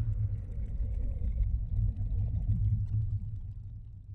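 Deep, steady low rumble of film-trailer sound design, fading away near the end.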